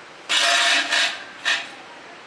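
Three short bursts of rustling noise, the first lasting about half a second, the next two brief, about a second and a second and a half in.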